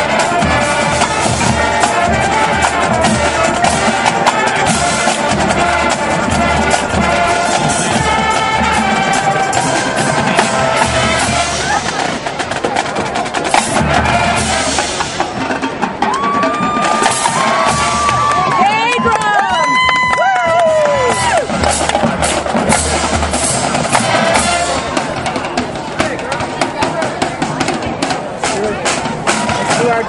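High school marching band playing its field show: brass over a drumline of snare and bass drums. Partway through, the drums thin out and a few held high notes with downward slides stand out before the full band returns.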